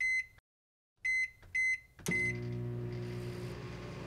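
Sharp Healsio oven's control panel beeping four times, short high beeps as its buttons are pressed to set it. Soft background music comes in about halfway.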